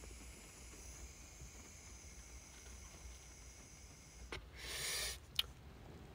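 A long drag on a vape pen: a faint, steady high hiss as air is drawn through it, then a short breathy exhale about four and a half seconds in, with a small click just before it and another just after.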